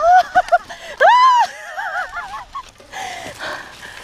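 A rider's high-pitched squeals and laughter: a quick run of giggles, then a long rising-and-falling whoop about a second in, trailing off into more giggling.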